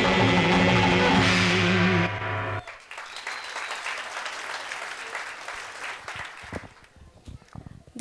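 Song music playing for the dance stops abruptly about two seconds in. Audience clapping follows and fades away by about seven seconds.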